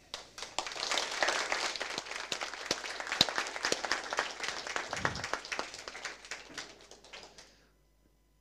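Audience applauding, a dense patter of many hands clapping that sets in just after the start and thins out and dies away over the last second or two.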